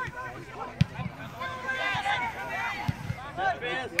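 Shouting from football players on the pitch, with a sharp kick of the ball about a second in and a duller thump near three seconds.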